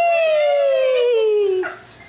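A woman's long, drawn-out wailing cry that rises and then sinks slowly in pitch, held for well over a second before it stops.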